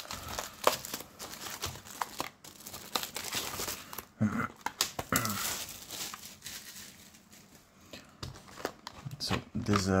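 Thin plastic shrink wrap crinkling and tearing as it is peeled by hand off a cardboard booster box, in a run of short irregular crackles.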